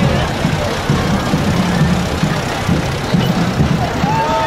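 A tractor engine running as it pulls a parade float, with crowd chatter and music underneath.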